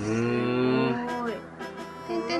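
A person's long, drawn-out vocal exclamation, lasting about a second and a half and bending gently up and then down in pitch, in reaction to hearing that the artwork is drawn in dots.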